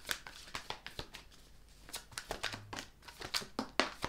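A deck of Angel Messenger oracle cards being shuffled by hand: a run of quick papery flicks and taps as the cards slide over each other, with a short lull midway and a few sharper snaps near the end.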